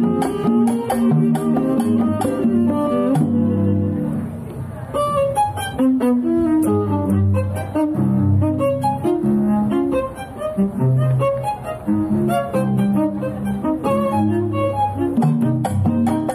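A live string ensemble, with cello and double bass prominent, playing a lively modern-style huapango. Bowed and plucked notes are mixed with short percussive hits.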